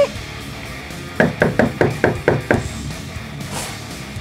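Rapid knocking on a door, about eight raps in a second and a half, followed near the end by a short sliding sound as the door's peephole slot opens.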